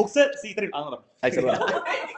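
A small group of people talking and chuckling together, with the sound cutting out for a moment about a second in.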